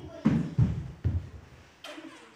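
Children smacking their lips together in the 'fish' articulation exercise: a few soft low pops in the first second and a sharper click near the end.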